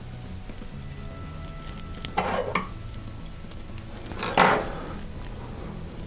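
Quiet background music, with two short handling noises from the fly-tying bench about two and four seconds in, the second louder.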